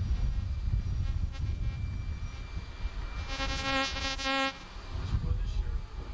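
A harsh, even buzzing tone sounds for a little over a second, just past the middle, over a steady low rumble.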